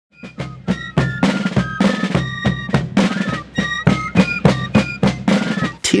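Fife and drum corps playing a march: snare and bass drums beating steadily under a high fife melody. It starts a moment in, out of silence.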